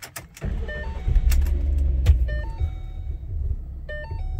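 A 2012 Ford Mustang's 3.7-litre DOHC V6 is started: a couple of clicks from the key, then the engine cranks and catches about half a second in, revs briefly and settles to idle.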